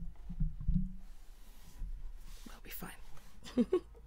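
A microphone on a stand being handled and adjusted: a few low bumps in the first second, then faint rustling and breathy murmuring, with a couple of spoken words near the end.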